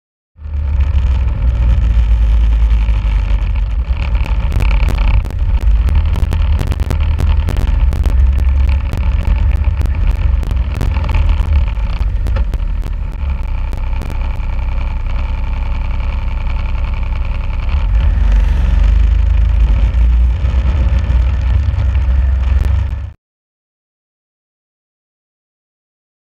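Snowmobile engine running steadily under way, heard from on board with a heavy low rumble. A run of sharp clicks and ticks comes through the middle stretch. The sound starts suddenly about half a second in and cuts off abruptly near the end.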